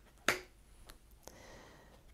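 A tarot card slapped down onto a wooden tabletop: one sharp snap about a third of a second in, then a couple of faint ticks as the cards are handled.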